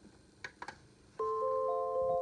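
A few faint clicks, then a glockenspiel-like melody starts just over a second in: clear, bell-like notes that ring on and overlap.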